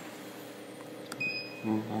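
Faint steady hum of a powered-up computerized flat knitting machine standing idle, not yet knitting, with a faint click and a brief high tone about a second in.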